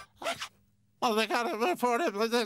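A brief sound effect, then about a second in a cartoon penguin starts chattering in high nonsense gibberish.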